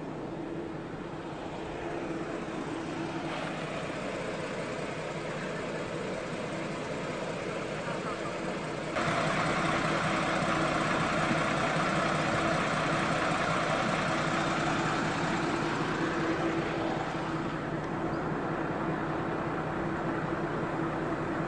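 Vehicle engine running steadily with tyre and road noise on a dirt road. It turns abruptly louder and brighter about nine seconds in.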